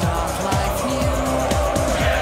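Background music with a steady beat and deep bass notes that slide downward several times a second.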